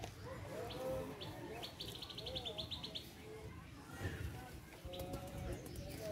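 Birds calling outdoors: a rapid trill of high chirps lasting about a second, starting a little before the two-second mark, and several lower calls that rise and fall in pitch.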